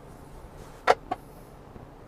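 Dodge Journey's flip-up front passenger seat cushion shutting over its under-seat storage bin: one sharp knock about a second in, then a lighter click just after.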